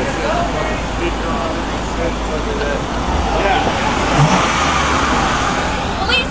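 City street traffic: a car driving past close by, a steady engine and road noise, with people's voices in the background.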